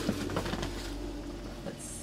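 Hands rummaging through items in a cardboard box of packaged goodies: soft rustling and light knocks, with a short high rustle near the end.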